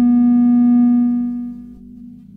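Ciat Lonbarde Sidrax and Cocoquantus analog synthesizers sounding a held low note rich in overtones. About a second in it fades away, leaving a faint lingering tone.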